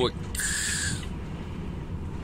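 Steady low diesel engine and road rumble inside a Renault Magnum truck cab at motorway speed. Early on there is a brief high hiss with a whistling tone lasting about half a second.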